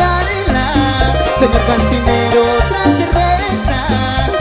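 A Latin tropical dance band plays an instrumental passage live. Melodic lines ride over a pulsing bass line, with regular percussion that includes a cowbell struck with a stick.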